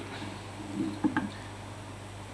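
Two light clicks about a second in as a chrome cocktail-layering dispenser is lifted off a glass, over a steady low hum.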